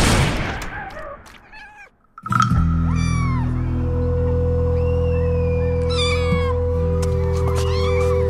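A cat meowing, one high arching call about three seconds in and another about six seconds in, over a steady music bed of held low notes that starts after a brief silence about two seconds in.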